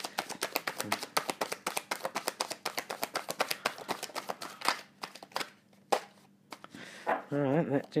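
A tarot deck being shuffled by hand: a fast, continuous run of card flicks for about four and a half seconds. Then a few separate card snaps as cards are drawn and dealt face down onto the table.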